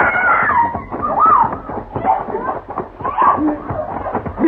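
A woman screaming and crying out in distress, in several short high-pitched cries.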